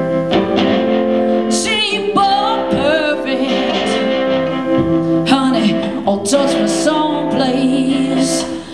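Live blues-rock band playing, with a woman singing sustained, wavering notes with wide vibrato over the band's steady held chords.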